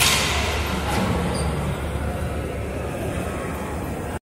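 Steady low rumble and hiss of a subway station, with a brighter rush of noise at the start that fades over the first couple of seconds.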